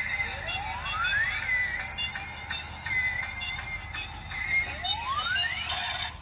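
Battery-operated light-up toy locomotive playing its electronic tune: high, beeping stepped notes, with a rising electronic sweep near the start and another near the end.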